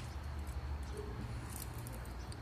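Faint rubbing and a few light ticks of cotton macramé cord being wound by hand around a bundle of cords, over a steady low background hum.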